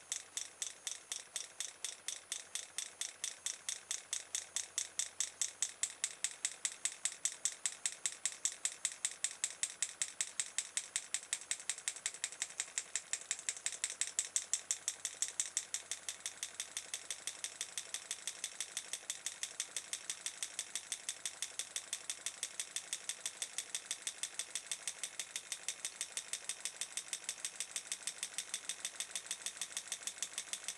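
Homemade pulse motor running, its open-air reed switch clicking shut and open in a fast, even train as the rotor's neodymium magnets sweep past and the coil is pulsed.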